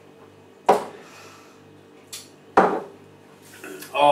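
Two sharp knocks of hard objects handled on a kitchen worktop, about two seconds apart, with a faint steady hum beneath.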